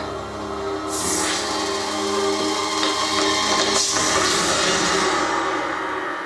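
A woman's long, held scream mixed with whooshing sound effects and dramatic score, as in a TV fight scene; it swells with hissing rushes about a second in and again near four seconds, then fades.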